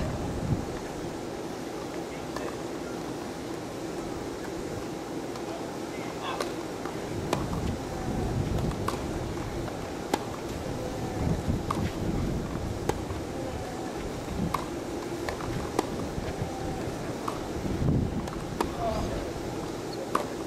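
Tennis racket strikes on the ball during a rally, sharp single hits roughly every second and a half, over gusts of wind on the microphone.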